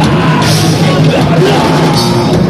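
Loud live heavy band playing: distorted electric guitars, bass and drums with shouted vocals.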